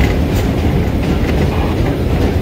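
Vintage New York City subway train running at speed through a tunnel, heard from on board: a loud, steady rumble of wheels and running gear with faint clicks from the wheels over the rail joints.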